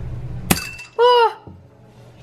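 Ramune bottle being opened: the glass marble is pushed down past the seal with one sharp pop about half a second in, followed by a short fizzing hiss of escaping carbonation.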